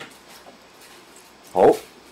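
A man's short vocal sound, sliding down in pitch, about one and a half seconds in. Before it there is only faint handling noise and a light click at the start.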